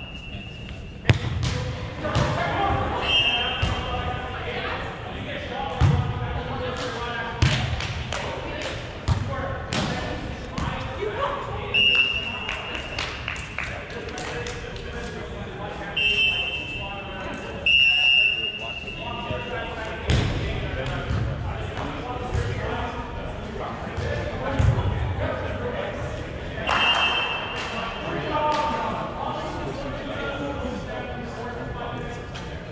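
A volleyball being struck by players' hands in rallies, a string of sharp smacks, amid unintelligible voices in a large echoing hall. Several short high whistle blasts sound through it.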